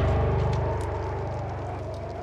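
The fading tail of a logo-intro music sting: a deep boom's rumble and a few held tones dying away steadily.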